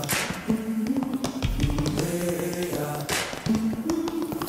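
Tap dancing: quick, irregular taps of tap shoes on a wooden floor over a men's choir holding sustained chords, with two short hissing bursts, one at the start and one about three seconds in.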